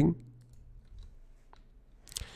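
A few faint, scattered clicks from a computer keyboard and mouse.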